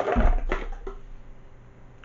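A knock with a deep thud, then plastic rattling and rustling that fades: a pile of empty plastic wax-melt clamshell packs being gathered up, some of them dropping to the floor.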